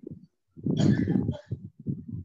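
A person's voice over a video call: a rough outburst of about a second, starting about half a second in, then a few short sounds.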